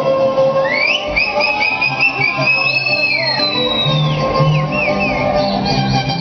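Music playing, with string instruments: a high wavering melody slides up about a second in, holds, and falls away near four seconds.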